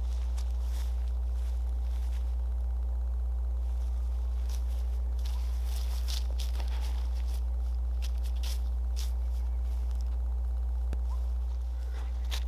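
Steady low wind rumble on the microphone, with faint footsteps and rustling on grass.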